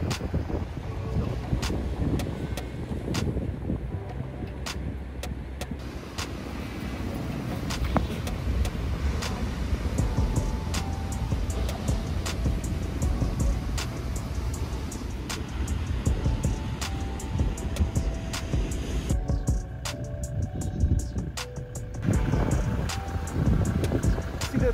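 Background music with light, evenly repeated ticking percussion and short held notes over a low, steady rumble.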